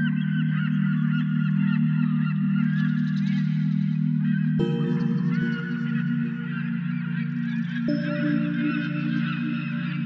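A dense chorus of many birds calling at once, with short overlapping calls throughout, over a steady low droning music bed whose held tones change about halfway through and again near the end.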